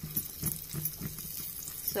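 Hot oil and ghee sizzling with a fine, steady crackle as cashews and dried red chillies fry for a tadka, a spoon stirring them in the small iron pan.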